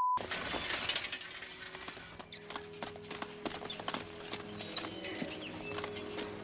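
A brief test-tone beep, then metal leg braces clanking and rattling irregularly with a child's running strides, with film score music coming in about two seconds in.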